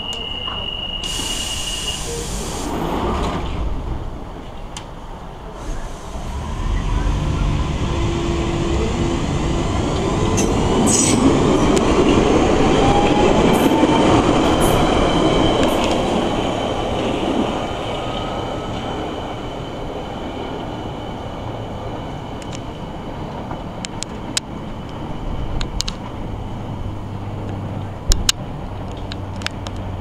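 A 1992 stock London Underground Central Line train pulling out of the station. A steady high tone and a hiss sit in the first few seconds. Then comes the rumble of the train moving off, with a whine that rises in pitch as it picks up speed; it is loudest midway and fades away, leaving a few sharp clicks.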